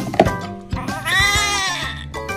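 A newborn baby crying while being bathed: one long wail about a second in, rising and then falling in pitch, over background music.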